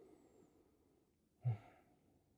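Near silence, broken about one and a half seconds in by a man's single short, low voiced sigh.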